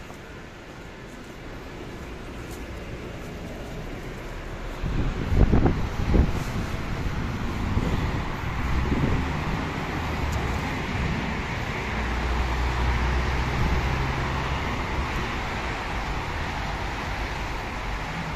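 Road traffic and idling vehicle engines outdoors: a steady wash of traffic noise with a low engine hum. It grows louder over the first seconds, and a few loud, low thumps come about five seconds in.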